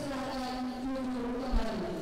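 A group of voices in unison, blended into one steady, buzzing drawn-out tone that dips slightly in pitch near the end.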